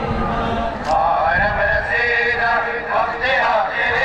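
A man's voice chanting a mourning lament (noha) through loudspeakers, the chant starting about a second in, over the noise of a large crowd.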